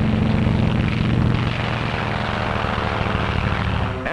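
Propeller engine of a Grumman Avenger torpedo bomber running with a steady drone as the plane takes off from a carrier deck.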